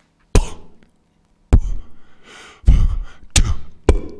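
Plosive pops: about five sharp puffs of breath on 'p' and 'b' sounds striking a close condenser microphone's diaphragm, each a sudden thud with a heavy low end that dies away quickly.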